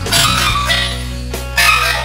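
A woman coughing twice into her hand, two short harsh bursts about a second and a half apart.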